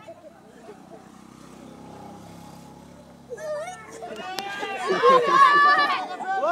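Children and onlookers shouting during a kabaddi game. The voices break in about three seconds in and grow loudest near the end, after a quieter start with a faint low hum.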